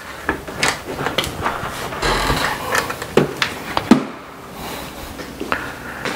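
A metal-framed glass front door being unlocked and opened: a run of clicks and knocks from the lock and handle through the first four seconds, then quieter.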